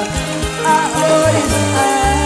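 Live cumbia band playing, a male lead singer singing over a stepping bass line, held melody notes and steady percussion.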